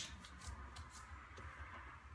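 Faint rustling and light handling noises over a low steady room hum.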